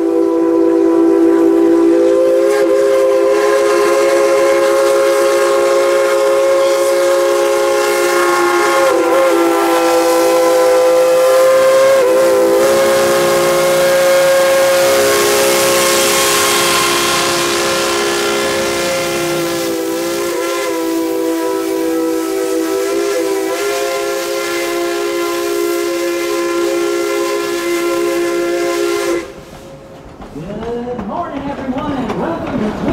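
Steam locomotive No. 190, a Baldwin 2-8-2, sounding one long blast on its chime whistle: a chord of several tones held for nearly half a minute, wavering in pitch now and then as the cord is worked, and cutting off sharply near the end. A hiss of steam rises briefly around the middle as the engine passes close by.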